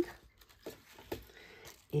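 Faint handling of a folded paper greeting card: soft rustles and two light taps near the middle as the card is picked up and held.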